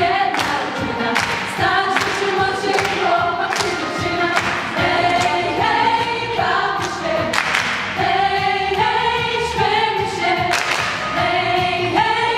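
A Polish folk choir of girls and young women singing a lively song without instruments, kept in time by hand claps.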